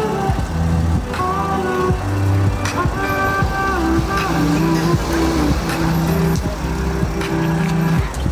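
Music for Brazilian zouk dancing, with a beat, held bass notes and a melody line.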